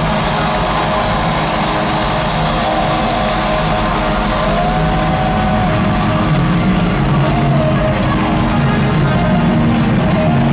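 Live rock band playing loud, with electric guitars and drums, held notes rising and falling in pitch a few times.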